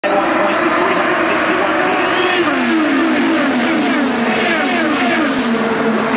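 IndyCars' twin-turbo V6 engines at race speed, several cars passing one after another, each engine note falling in pitch as it goes by, over a continuous blend of engine noise from the rest of the field.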